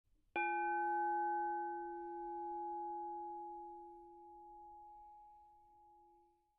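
A single struck bell, hit once about a third of a second in and left to ring with several clear tones that fade slowly, the higher overtones dying away first and the lower tones lingering almost to the end.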